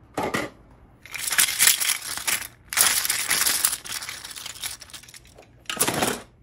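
3D-printed plastic objects being pushed down into a clear plastic storage box crammed with other prints, rustling and scraping against them in two long bursts and a short one near the end.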